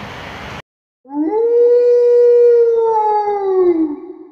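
Pitch-side sound cuts off abruptly about half a second in. After a brief silence comes one loud, long howl, added as a sound effect, that rises at the start, holds steady and falls away at the end.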